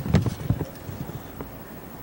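A few quick, irregular knocks or taps in the first half second, then low background noise with one more faint click about halfway through.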